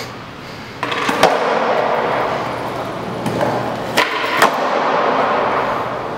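Skateboard wheels rolling across a concrete floor, with sharp clacks of the board about a second in and twice more around four seconds: the tail popping and the board hitting the ground during a trick attempt.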